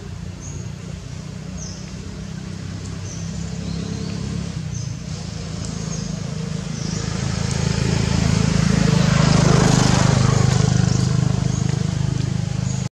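A motor vehicle passing by unseen: a low engine hum that grows louder to a peak about nine to ten seconds in, then begins to fade.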